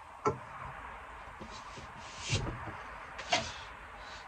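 A drinks can and a beer glass knocking on a wooden table as they are set down and handled: a sharp knock just after the start, a duller thump a little past halfway, and another sharp knock near the end.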